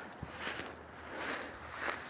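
Footsteps crunching and swishing through dry, matted grass: three rustling steps.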